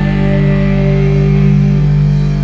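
Rock band music: electric guitars and bass hold a single chord that rings on steadily.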